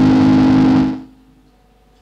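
Ibanez electric guitar played through an effects pedal, a sustained chord ringing loudly and then stopping abruptly about a second in, leaving only a faint amplifier hum.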